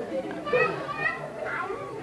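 Faint, high-pitched voices in the background, heard in a short gap in the man's talk.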